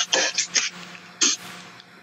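A few quick breathy laughs, short hissing exhalations in a burst, then one more a little after a second.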